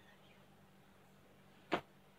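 Quiet room tone with a faint steady hum, broken near the end by a single short, sharp click.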